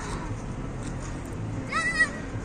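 A child's short high-pitched squeal near the end, rising and falling in pitch, over steady background noise.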